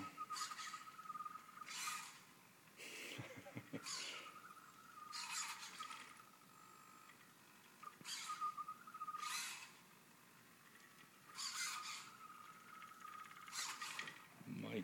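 A small home-built wheeled robot's electric drive and steering motors: a steady high whine that comes and goes, broken by short buzzing bursts every second or two as the robot drives, stops and turns its wheel back and forth.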